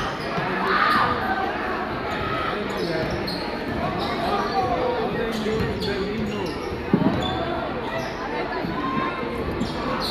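A basketball dribbled on a hardwood gym floor during play, its bounces heard over the chatter of a crowd in a large gymnasium. One sharp loud hit comes about seven seconds in.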